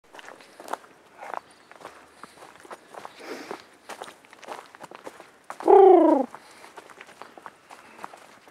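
Footsteps on a dirt forest trail, irregular and light. About three-quarters of the way through, one loud pitched call falls in pitch and lasts under a second.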